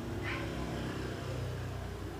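A steady low hum of background noise, with no clear event in it.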